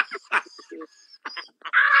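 A woman laughing: short breathy bursts of laughter, then near the end a long, loud, high-pitched shriek of laughter.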